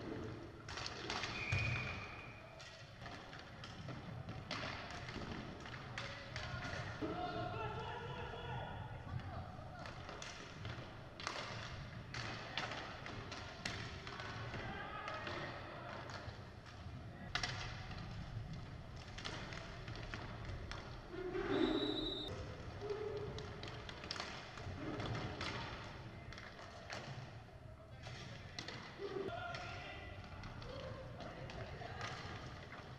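Inline hockey play on a wooden hall floor: repeated sharp clacks and knocks of sticks, puck and skates against the floor and boards, with indistinct shouts from players and onlookers. A brief high whistle note sounds about two-thirds of the way through.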